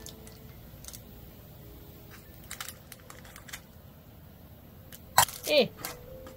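A metal spoon clicking and tapping lightly against a metal baking tray as cake batter is spread evenly, with a sharper knock about five seconds in.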